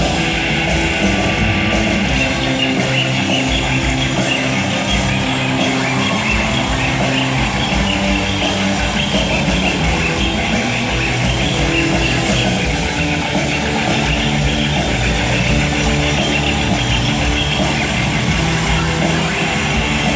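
Live rock band playing an extended electric guitar solo at a steady, loud level, recorded from the arena seats.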